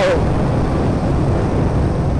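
Steady low rumble of a moving motorbike and the surrounding motorbike and car traffic.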